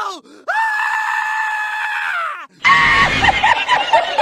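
A long, loud scream voiced for a cartoon goat, held on one pitch and dropping at the end. It is heard twice: one cry cuts off just after the start, and a second lasts about two seconds. About two and a half seconds in it gives way to a louder, busier mix of sounds.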